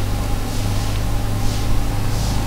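A steady low hum with an even hiss over it, unchanging through the pause in speech.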